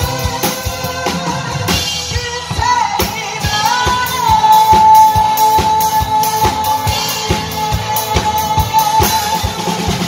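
A singer on a microphone backed by a live rock band of electric guitar and drum kit, with a steady drum beat; from about four seconds in the singer holds one long note.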